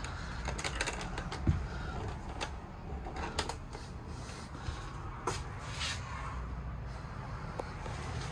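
Footsteps and handling knocks of someone walking through a travel trailer's interior: scattered light clicks and knocks over a steady low rumble, with one sharper knock about a second and a half in.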